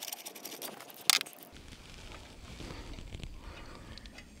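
Light metallic clicks and rattles of a hand tool working at an antenna mount's clamp bolt, with one short sharp scrape about a second in. The bolt is too tight to loosen.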